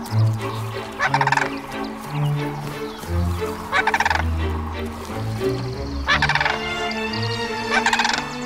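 Sandhill crane giving loud rolling calls, four short bursts about two to three seconds apart, as part of courtship. Background music of held low notes runs underneath.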